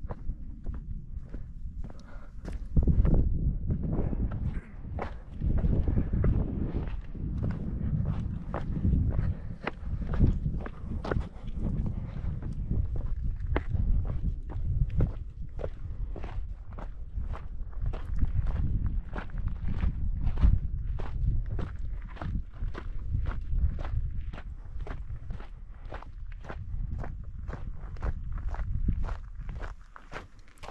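A hiker's footsteps on gritty sandstone and dirt trail at a steady walking pace, about two steps a second, over a low rumble.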